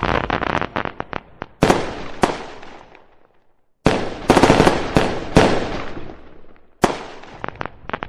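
Fireworks going off: a fast string of sharp bangs and crackles, a near-silent pause of under a second near the middle, then a second cluster of bangs and one last bang near the end.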